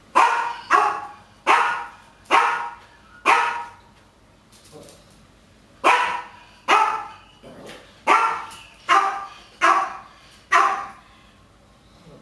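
Medium-sized shepherd-type mixed-breed dog barking at a person: about eleven short, sharp barks in two runs, with a pause of about two seconds in the middle.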